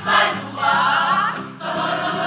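A Samoan school performing group singing together in chorus, many voices blended.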